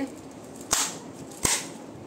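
Two sharp snaps, about three-quarters of a second apart, as a tarot deck is handled before a draw.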